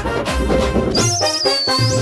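Short musical sting for a show's title card: it starts with a sudden loud hit with heavy bass, then sustained notes. From about a second in, a high wavering, whistle-like tone rides over the music and ends just before the sting cuts off.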